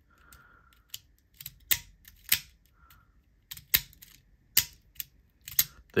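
Small metal tools of a Toggle Tools Mini multi-tool being slid and toggled in and out by hand, giving a string of irregular sharp clicks, some in quick pairs. The mechanism is malfunctioning, its tools coming off their track.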